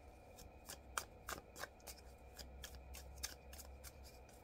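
Tarot cards being shuffled by hand: faint, irregular card clicks, about three or four a second.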